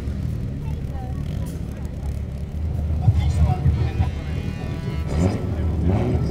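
Drift cars' engines idling at a start line, a low uneven rumble, with faint public-address commentary over it.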